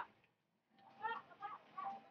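Faint bird calls: a few short calls between about one and two seconds in.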